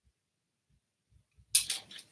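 Near silence, then about one and a half seconds in, a brief burst of scraping and rustling as a sheet of heavy watercolour paper is handled and slid across the tabletop.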